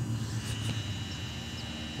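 DJI Mavic Pro quadcopter hovering at a distance: a steady hum from its propellers, with a thin high whine joining about half a second in.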